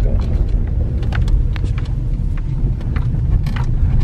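Car on the move, heard from inside the cabin: a steady low rumble of engine and road noise, with a few faint clicks.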